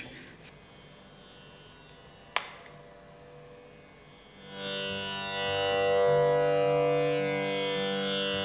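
A single sharp click, then about halfway in a steady sustained instrument tone starts and holds, its low note shifting in steps.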